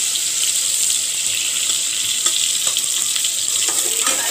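Soaked soya chunks sizzling steadily in hot oil in an aluminium pot, with a few faint clicks of the ladle against the pot.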